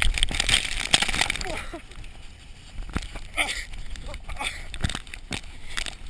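Rushing, scraping snow noise from a fast slide on the back down a steep snow slope, with snow spraying over the microphone. It is loudest for the first couple of seconds, then quieter with irregular knocks from a bumpy ride.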